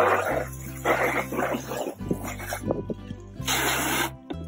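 Background music with a steady low tone, under short hissing bursts of a garden hose spraying water over fish on a table, the loudest burst near the end.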